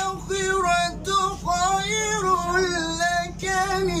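A young man chanting Quranic recitation solo in a high voice, holding long ornamented notes that waver and turn in pitch, with brief breaks between phrases.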